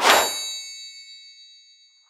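End-card sound effect: a quick swish into a bright metallic ding, which rings on and fades away over about two seconds.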